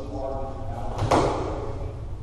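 Indistinct voices of people talking, with one sharp thump about a second in.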